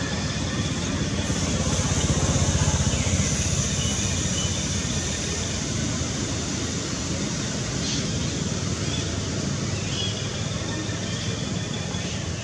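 Steady outdoor background noise with a low rumble, swelling a little about two seconds in.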